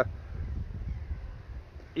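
Wind noise on the microphone: a steady low rumble.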